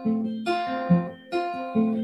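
Acoustic guitar strumming chords, about two strums a second.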